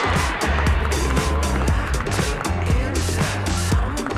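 Background music with a heavy bass line and a steady beat.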